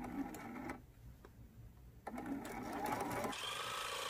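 Electric sewing machine stitching a seam: a short run at the start, a pause of about a second, then a longer steady run from about two seconds in.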